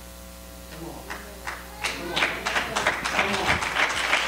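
Congregation clapping, starting thinly and building into applause over the last couple of seconds, over a steady held chord.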